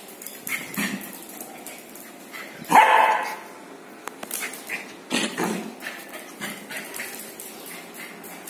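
Lhasa Apso puppy playing, with one loud bark about three seconds in and a few shorter, quieter sounds around it.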